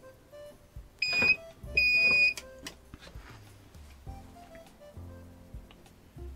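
Two electronic beeps from bench test equipment being switched on: a short one about a second in, then a longer one just after, followed by a click. Quiet background music plays throughout.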